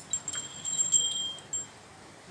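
High-pitched metallic ringing: a few light jingling strikes that ring on for about a second and a half, then fade.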